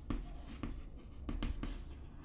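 Chalk writing on a chalkboard: a run of short, irregular taps and scratches as letters are stroked out.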